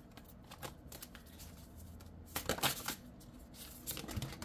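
Tarot cards being shuffled by hand, light card-against-card slaps and slides, with a louder flurry about two and a half seconds in.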